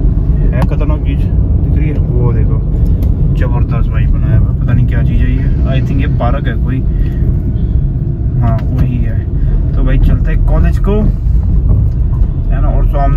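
A steady low rumble of road and engine noise inside a moving car, with a voice talking on and off over it.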